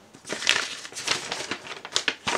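Cardboard box being handled and opened by hand: a run of irregular rustling and scraping noises, loudest about half a second in.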